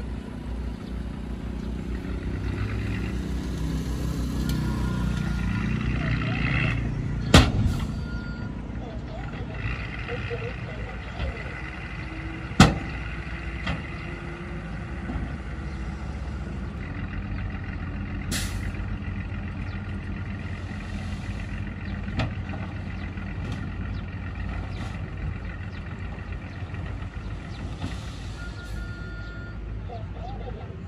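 Small dump truck's engine running under load as its tipper bed is raised and the soil load slides out, growing louder over the first several seconds and then running steadily. Two sharp bangs stand out, about seven and twelve seconds in.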